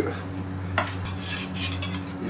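A metal spoon clinking against a stainless steel bowl of sauce, a few light clinks mostly in the second half, over a steady low hum.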